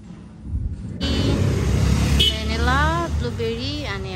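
A loud, steady low rumble that starts suddenly about a second in, with a high-pitched voice speaking or calling out over it in the second half.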